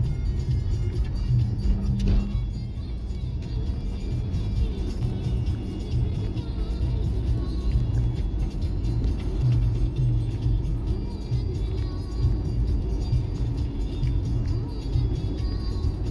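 Car driving along a paved road, heard from inside the cabin as a steady engine and road rumble, with music playing throughout.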